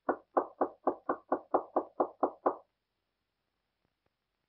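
Rapid knocking on a wooden door: eleven even knocks at about four a second that stop after under three seconds.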